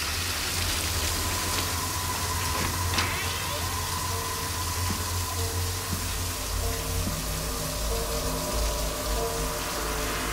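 Shower spray running steadily over a low, droning music score, with faint held notes coming in about halfway through.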